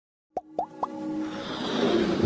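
Animated logo intro sting: three quick pops, each a short rising blip, about a quarter second apart, then a swelling electronic sound that builds toward the end.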